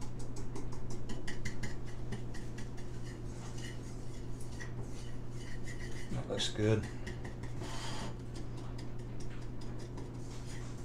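Small metal wire whisk stirring a dry spice rub in a ceramic bowl, its wires ticking and scraping against the bowl in quick repeated strokes.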